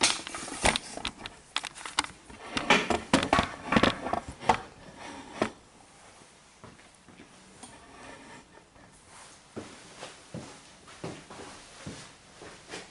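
Handling noise from the camera being picked up and repositioned: a quick run of clicks, knocks and rubs for about five seconds, then quieter with a few faint knocks.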